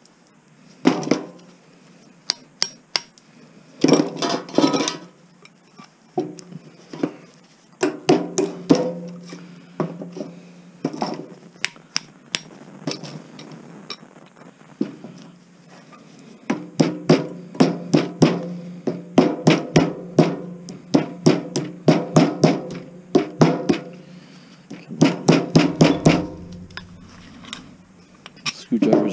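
Hammer tapping a steel screwdriver or punch against a small range hood fan motor in quick bursts of sharp metallic strikes, each with a short ring, as the copper winding is knocked out for scrap.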